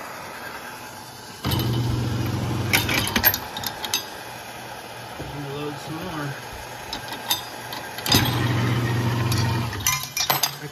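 Garage-door-opener motor of a homemade brass annealing machine running in two steady-humming bursts of about two and a half seconds, each starting and stopping suddenly, about a second and a half in and again about eight seconds in, indexing the case carousel. Sharp metallic clinks of brass cases come during the first run, and MAPP gas torches hiss steadily before it.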